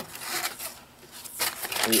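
Thin nylon drawstring bag rustling as it is handled and smoothed flat by hand, in soft irregular bursts.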